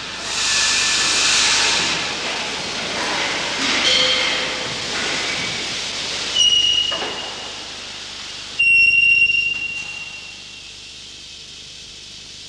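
Steam hissing from a colliery steam winding engine, coming in surges. One comes near the start and two sudden ones, each with a thin high whistling tone, come a little after six seconds and at about eight and a half seconds, before the sound settles to a quieter steady hiss.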